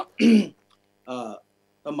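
A man's voice: a short, loud vocal sound just after the start and a softer one about a second in, with silent pauses between, before his speech resumes near the end.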